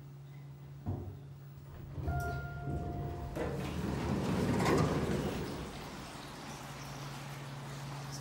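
Elevator arriving at a floor: a steady low hum from the car, a knock as it stops about a second in, then a held electronic beep lasting about a second. The stainless-steel doors then slide open with a rush of noise that swells and fades over the next few seconds.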